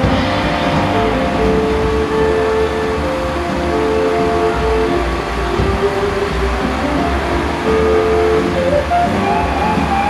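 Live rock band playing, with electric guitar holding long notes of about a second each, mixed with a steady low rumble of street traffic. Near the end a wavering tone rises.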